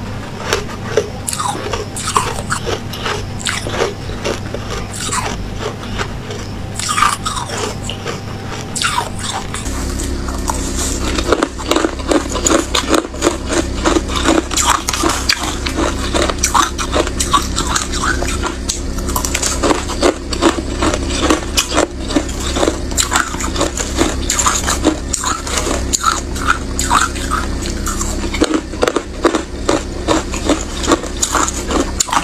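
Frosty white ice being bitten and crunched between the teeth, in crisp cracks. About ten seconds in, the bites off solid blocks give way to quicker, busier crunching of spoonfuls of crushed ice.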